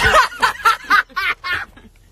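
A woman laughing hard in a quick run of short bursts that dies down near the end.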